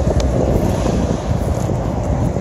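Wind buffeting the phone's microphone: a loud, fluttering low rumble that does not let up.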